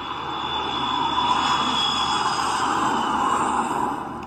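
A steady rushing noise from an animated film's soundtrack, heard through laptop speakers. It swells over the first second and holds, with a thin high whistle over its first half.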